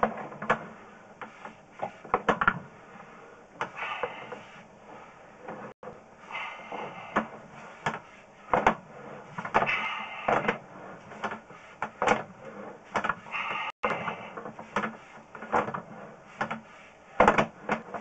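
Sewer inspection camera's push cable being pulled back out of a cast iron drain line, giving irregular clicks, knocks and short scraping rubs.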